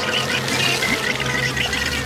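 Cartoon sound effect of water from a fire hose gushing and gurgling as a sponge soaks it up and swells, with many short bubbly blips. Background music plays under it.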